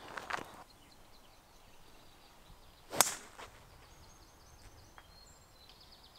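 Golf driver striking a ball off the tee about three seconds in: one sharp crack.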